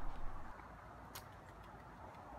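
Faint background ambience that fades down in the first half second and then stays low and steady, with one short click about a second in.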